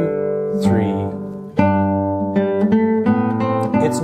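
Nylon-string classical guitar playing a minuet: plucked notes and chords with a strong new attack about a second and a half in, after a brief dip. The music is kept in steady time across the end of the section and straight back into the beginning, with no pause at the join.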